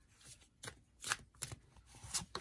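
A deck of oracle cards being handled and fanned in the hand, the cards sliding and flicking against one another in several short, crisp rasps.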